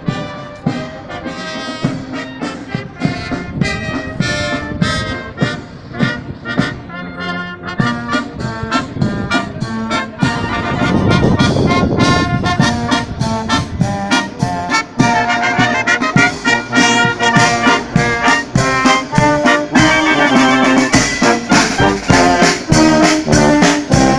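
Brass band playing with trumpets and trombones in a steady rhythm, growing louder about ten seconds in.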